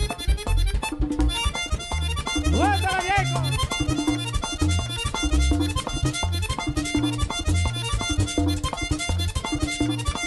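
Live vallenato band playing an instrumental passage: a button accordion carries the melody over electric bass, caja drum and a guacharaca scraper in a steady beat. A short voice cry rises and falls about three seconds in.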